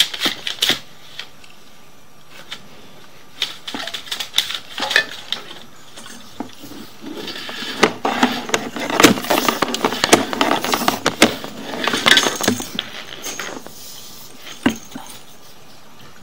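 Clattering knocks and rattles of a drain inspection camera and its push-rod cable being pulled back through the pipe. The knocks come sparsely at first and then turn into a dense spell of rattling in the middle.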